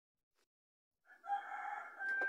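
After about a second of dead silence, a long animal call with a steady held pitch begins and carries on past the end.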